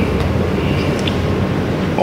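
Steady low hum and rumble of room background noise, picked up by the press microphones during a pause in speech.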